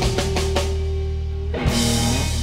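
Live blues-rock band with electric guitar, electric bass and drum kit: a quick run of drum strokes over a long held low note, then a fresh chord struck with the drums about one and a half seconds in and left ringing, as the song winds to its ending.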